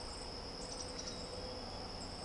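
Insects trilling steadily on one high pitch, with a few faint higher chirps around the middle.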